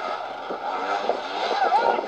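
Several voices calling and shouting over one another on a football pitch, with no single voice standing out as words.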